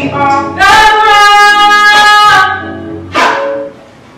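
A woman singing into a hand-held microphone, with a long held note lasting nearly two seconds, then a short note before her voice drops away near the end.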